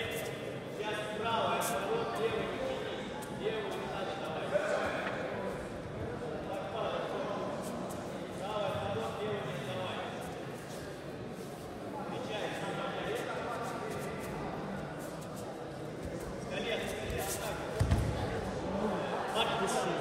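Indistinct voices talking and calling out, echoing in a large sports hall, with a few thuds on the judo mat, the heaviest near the end.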